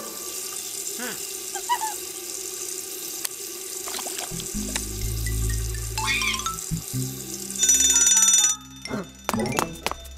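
Cartoon soundtrack: background music over a running sink tap, with comic sound effects. A loud buzzing tone cuts in about 8 seconds in and stops abruptly under a second later, followed by a few sharp clicks.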